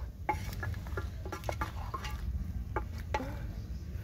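A wooden pestle knocking and scraping against a stainless-steel bowl as it stirs boiled meat, giving a run of irregular clicks and knocks, some with a brief metallic ring.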